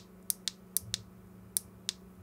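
Small metal snap-dome contact plate on an HME COM6000 belt pack's button membrane clicking as it is pressed with a pin: six short, sharp clicks in pairs. The crisp click shows the dome is still good and needs no reshaping.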